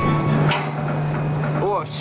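Steady low mechanical hum, with a knock about half a second in from a boot on the steel rungs of the derrick ladder.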